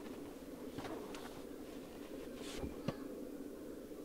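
A faint steady low hum made of a few held tones, with a few light clicks and rustles.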